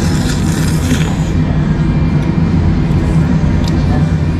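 Konjac noodles slurped from a bowl of spicy ramen in the first second or so, then a few light clicks of chopsticks against the bowl, over a loud, steady low rumble.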